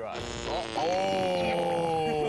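A man's long, drawn-out 'Ohhh' of mock shock, starting about a second in and held on one pitch that sinks slowly.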